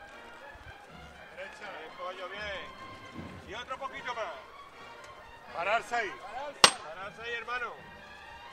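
Scattered voices and calls of a crowd in the street, coming in short spells, with one sharp knock about six and a half seconds in.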